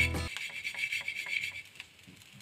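Background music cutting off just after the start, then faint rubbing and light irregular clicks of toasted bread croutons being tossed and settling in a metal pan.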